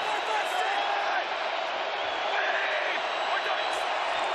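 Stadium crowd noise: many voices blended into a steady din, with no announcer speaking.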